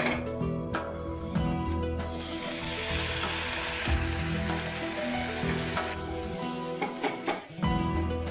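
Prawns, onion and green pepper sizzling as they are stir-fried in a hot nonstick wok with a wooden spatula; the sizzle swells up about two seconds in and drops away after about six seconds.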